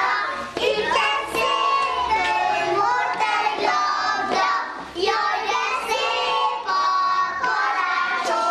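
A group of young children singing together in unison, with held notes and short breaks between phrases.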